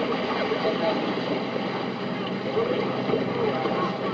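Indistinct voices over a steady background hiss and a low hum.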